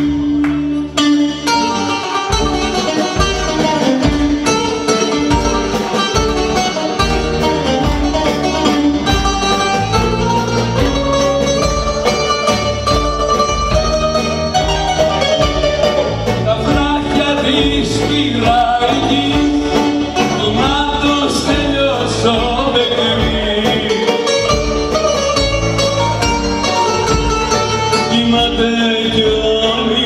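Live Greek band music: bouzouki melody over drum kit and keyboards, with a male voice singing. The drum beat comes in about two seconds in and keeps a steady rhythm.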